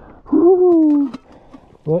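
A man's drawn-out "ooh" exclamation, about a second long and falling slightly in pitch, a reaction to handling a hot tin of food. He starts to speak just before the end.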